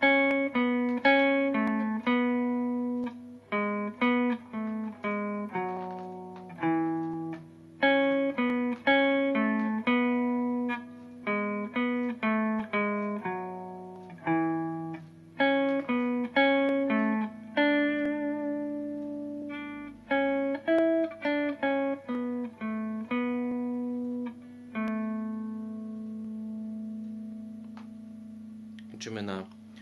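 Electric guitar with a clean tone playing a slow single-note carol melody, the refrain, each picked note ringing out and fading. It ends on one long held note.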